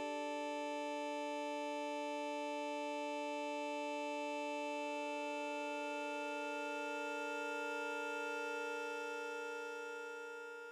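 Sustained synthesizer drone: a steady chord of held electronic tones, with a higher note joining about halfway through, fading near the end.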